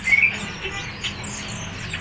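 Several caged songbirds chirping in short, scattered notes, with one brief rising chirp right at the start.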